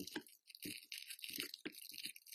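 Cellophane of a henna cone crinkling in short, irregular crackles as its top is folded closed by hand.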